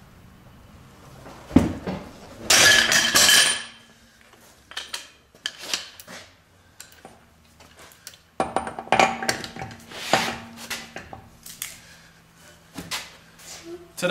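Breaker bar, pipe extension and socket clanking on a front axle nut as it is broken loose and turned off. A sharp knock comes about a second and a half in, a loud clatter of metal just after, then scattered clinks and another run of clanking past the middle.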